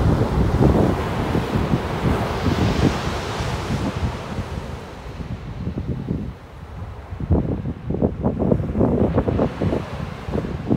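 Wind buffeting the microphone over the wash of small waves breaking on a sandy beach. The surf hiss swells a few seconds in, and the wind gusts hit harder near the end.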